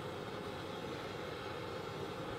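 Butane gas torch burning with a steady, even hiss.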